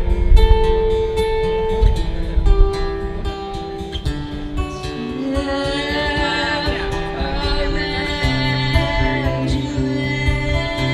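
Live acoustic rock performance: an acoustic guitar strummed and picked under a man's sung vocal. The voice glides between long held notes in the second half.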